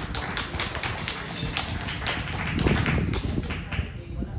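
Applause from a small audience: many hands clapping in an irregular patter of sharp claps that thins out near the end.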